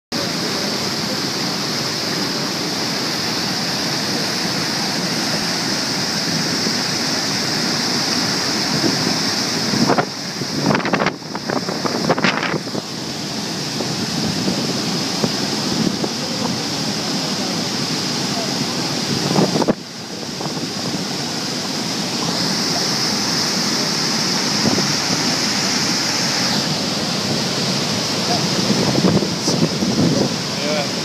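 Steady rushing of the Niagara River's rapids and falls, with wind buffeting the microphone. The sound breaks off briefly a few times around ten to twelve seconds in and again near twenty seconds.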